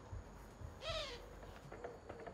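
A cat meows once about a second in: a short call that rises and falls in pitch.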